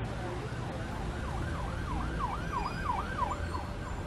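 An emergency vehicle siren in quick rising-and-falling yelps, about three a second, starting about a second in and fading near the end, over a low, steady city traffic rumble.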